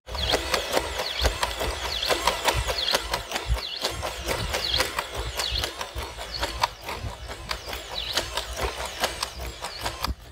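Boston Dynamics Atlas hydraulic humanoid robot running on grass: irregular knocks of its footfalls and moving joints, with repeated short squeals that rise and fall and a low rumble underneath.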